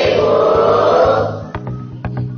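A class of pupils answering the teacher's good-morning in unison, many voices drawn out together into one chanted "…pagi, ibu". Background music runs under it. The chorus ends about a second and a half in, followed by a few sharp taps.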